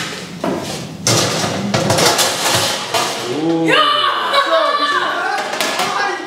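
Metal baking tray clattering and knocking as it is taken out of an oven and set down on a steel kitchen counter, with several sharp thuds. About three and a half seconds in, several young voices shout excitedly.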